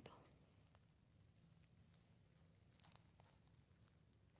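Near silence, with a few faint, short soft sounds about three seconds in.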